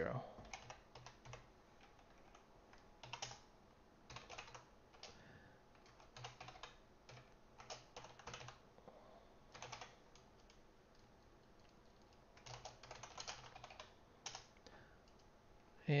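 Faint computer keyboard typing: short runs of keystrokes broken by pauses of a second or more.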